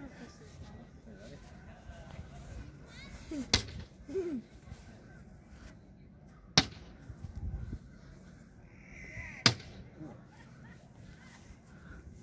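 Three sharp slaps a few seconds apart: cornhole bean bags landing on the wooden board.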